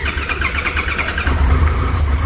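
Triumph Tiger 1200 GT Explorer's three-cylinder engine being cranked by its electric starter on a cold start. It catches about a second and a quarter in and settles into a steady idle.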